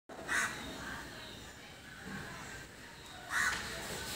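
A bird calls twice, once near the start and again near the end, over faint outdoor background noise.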